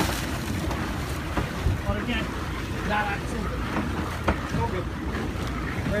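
Game-fishing boat's engines running, with water churning at the stern and wind buffeting the microphone.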